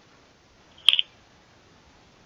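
A brief electronic beep from the RFinder B1 DMR radio, about a second in, with two quick peaks; otherwise near silence.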